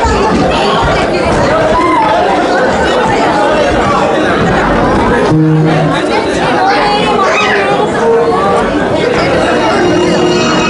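Many people talking at once in a large hall: a steady hubbub of overlapping conversation, with a short steady pitched tone a little past halfway through.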